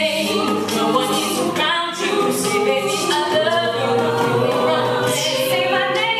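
Mixed-voice a cappella group singing an R&B arrangement, with the backing voices holding close chords under the lead and vocal percussion adding breathy, hissing beats.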